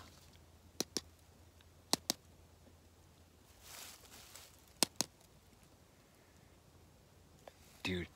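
Two small pumpkins knocked together in three pairs of sharp knocks, each pair about a second or two after the last, done to "call in" pumpkins the way hunters rattle to call game. A soft hiss comes between the second and third pair.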